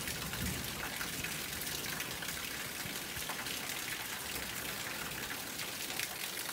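Steady rain: a continuous hiss of falling drops with many small drop ticks scattered through it, at an even level throughout.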